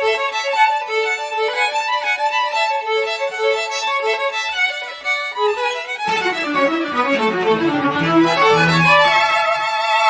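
String quartet of two violins, viola and cello playing. For the first six seconds only the higher strings sound; then the cello comes in with low notes and the full quartet grows louder toward the end.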